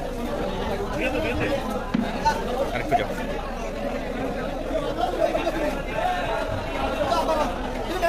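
People talking at once in a steady chatter of voices, with a couple of short knocks about two and three seconds in.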